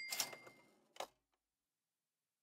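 A few short clicks at the start, with a brief faint high tone under them, and one more click about a second in, then silence.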